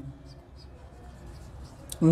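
Marker pen writing on a whiteboard: faint scratching strokes, with one short sharp click near the end.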